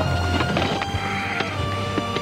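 Background music with held, sustained notes over a low steady hum, with a few sharp clicks from a camera shutter firing.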